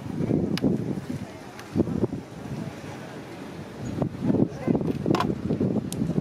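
Wind buffeting the microphone, and near the end a single sharp click of a golf club striking the ball off the tee.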